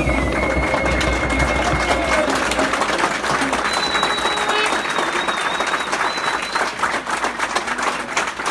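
Crowd applauding, with dense steady clapping and voices mixed in.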